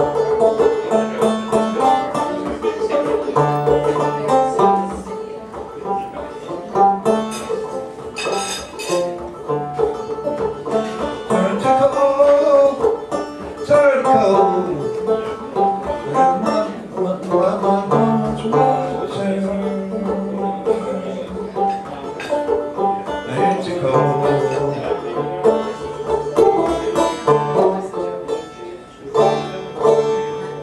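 Banjo playing an instrumental passage of a song: a busy run of plucked notes over changing low bass notes.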